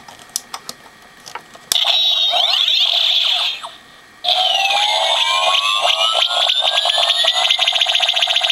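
Power Rangers Super Megaforce Deluxe Super Mega Saber toy playing its electronic charging sound effect through its small speaker, triggered by the Ranger Key. A few clicks come first; then, about two seconds in, a burst of electronic sweeps, a brief pause, and a long rising whine with rapid pulsing.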